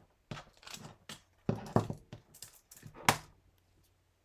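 Craft supplies being handled on a desktop: a few short knocks and rustles, the sharpest about three seconds in.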